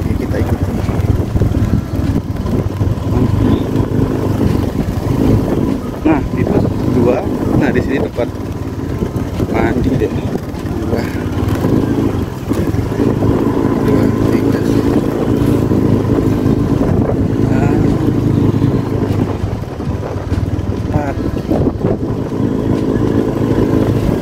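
Motorcycle engine running steadily while riding at low speed.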